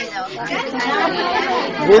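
Several people talking over one another in lively conversational chatter.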